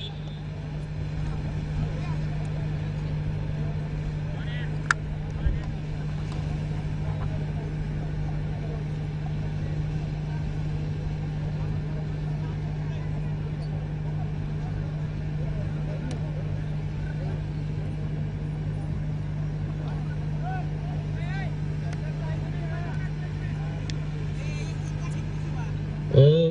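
A steady low hum with a low rumble under it, unchanging throughout, with faint voices in the distance now and then and a couple of brief clicks about five seconds in.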